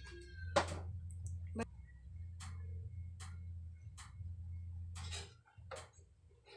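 Regular mechanical ticking, about one tick a second, over a low steady hum.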